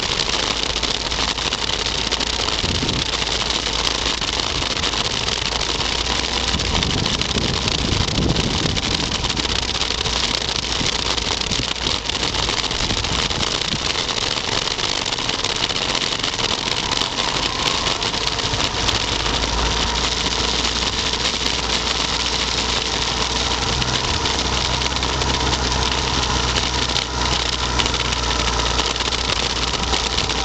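Motorcycle engine running at low speed under a constant rushing noise. In the second half a low, steady engine hum comes up.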